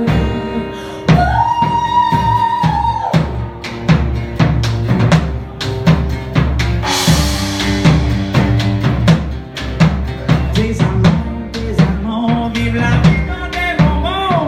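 Live band music: acoustic guitar and drums keep a steady beat through an instrumental stretch, with one long held note about a second in.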